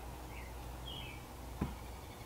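Faint steady room hum with two short, falling chirps and a single soft tap near the end.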